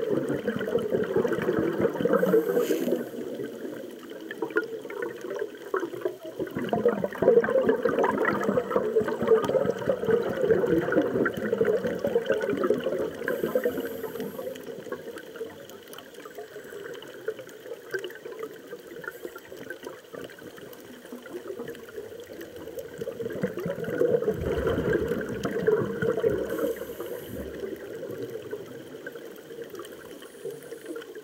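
Scuba divers' exhaled regulator bubbles heard underwater, a bubbling rush that swells loud in long stretches and fades between them.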